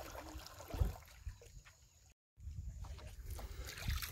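Quiet water sloshing and trickling around a small plastic rowboat being paddled, over a low rumble, with a faint knock a little before the first second; the sound cuts out for a moment about halfway.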